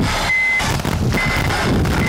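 A vehicle's reversing alarm beeping, short high beeps about once a second, over the low rumble of an engine.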